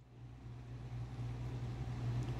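A steady low hum with a faint hiss, fading in over the first second and then holding level.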